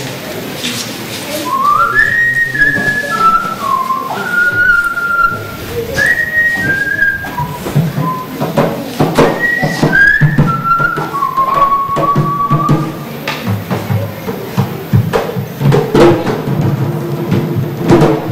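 A person whistling a melody of stepped, gliding notes for about ten seconds, then stopping, over Garifuna hand drums with wooden bodies and hide heads beaten the whole time.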